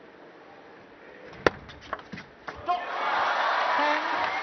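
Table tennis ball clicking sharply off bat and table a few times, the loudest crack about one and a half seconds in, followed by arena crowd noise swelling up as the rally ends.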